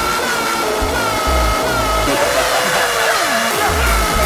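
Hardcore gabber track: a high synth riff repeats over heavy distorted kick drums, which drop out for about a second in the middle while a falling pitch sweep plays.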